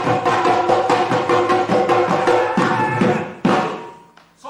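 A set of Assamese dhols, barrel drums, played solo with a stick and the bare hand: a fast, dense run of strokes with ringing drum tones, ending with one last loud stroke about three and a half seconds in that rings away.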